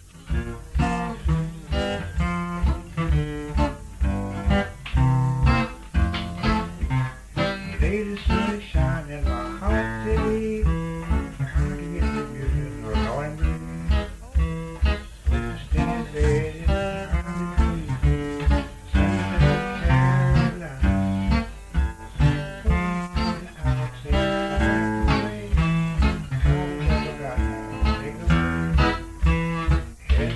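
Acoustic blues guitar playing, starting right after a brief pause: a steady, even bass note about two to three times a second under picked higher melody notes.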